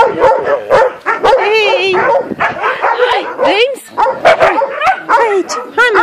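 Several dogs barking and yelping at once, a dense run of sharp barks mixed with high rising-and-falling yips and whines.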